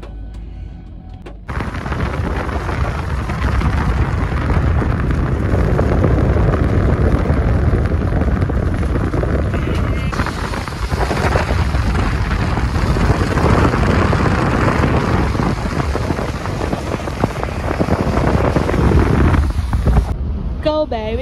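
Loud wind buffeting a phone microphone filming from a moving car, setting in suddenly about a second and a half in and rumbling on, with the rush of the car's travel beneath it.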